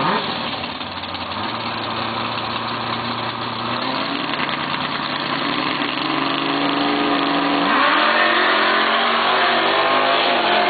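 Two drag cars' V8 engines, one a 440 big-block Barracuda, running at the start line and then launching hard. About eight seconds in the engines rev up sharply, rising in pitch and getting louder as the cars accelerate away down the strip.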